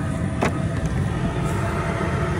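Steady low roar of the propane burner heating the crawfish boiler toward a rolling boil, with one short click about half a second in.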